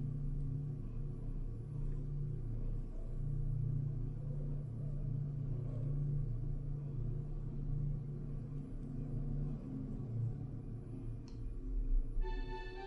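Hyundai WBLX gearless traction elevator car travelling upward: a steady low rumble and hum heard inside the moving car, with a faint click near the end as it nears its floor.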